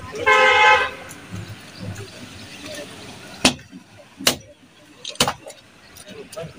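A vehicle horn gives one steady honk of under a second at the start. Three sharp cracks follow in the second half, about a second apart.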